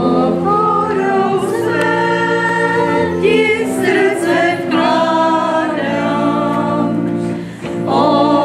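A church choir singing a hymn to pipe organ accompaniment, the organ holding steady chords beneath the moving voices.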